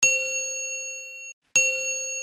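Two bell-like ding sound effects, each a sharp metallic strike that rings on in several clear tones. The first cuts off suddenly just before the second strikes, about a second and a half in.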